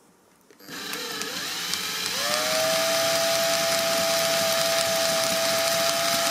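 Cordless drill motor starting about half a second in, rising in pitch about two seconds in and then running at a steady whine as it spins a bobbin, winding copper magnet wire into a coil.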